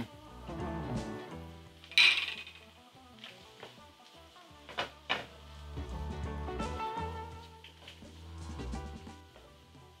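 A silicone spatula stirring sautéed onions and ground spices in a nonstick pot while the spices toast, over background music. There is a short, louder scrape about two seconds in and a sharp knock about five seconds in.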